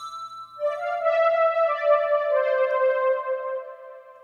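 Prophet-5 analog synth lead (the 'Magic Low' one-shot preset) playing a slow phrase of a few long held notes that step downward in pitch, each running into the next, then fading out near the end.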